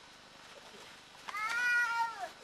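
A cat meows once near the end, a single call about a second long that rises and then falls in pitch.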